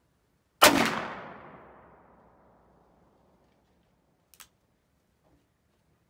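A Ruger Super Redhawk .44 Magnum revolver fired once, about half a second in, the report echoing away over a couple of seconds. A short, sharp click follows about four seconds in.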